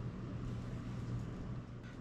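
Quiet room tone: a steady low hum with a faint hiss and no distinct sounds.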